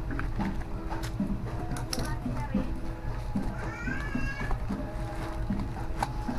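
Scissors snipping through packing tape on a cardboard box, a run of short clicks and cuts, then the cardboard flaps pulled open, over a steady background hum. A brief high, rising voice-like call comes about four seconds in.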